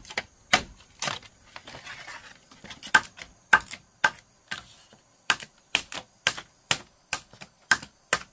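Machete blade striking bamboo in a series of sharp knocks, about two a second, as the pole is split into strips.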